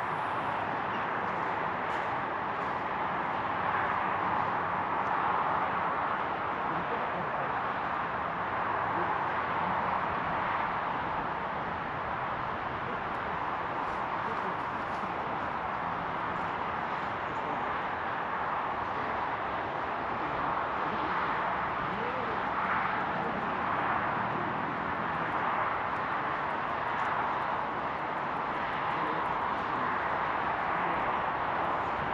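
Steady outdoor ambience: an even hiss with faint distant conversation now and then.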